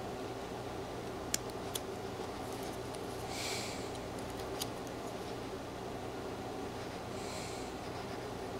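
Pocketknife blade cutting thin shavings from a small wooden carving: two short, soft scraping cuts, about three seconds in and near the end, with a few sharp little clicks of the blade on the wood.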